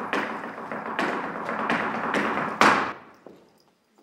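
Echoing flamenco-style percussion: sharp strikes in a quick rhythm, about three a second, building to the loudest hit near three seconds in and then stopping.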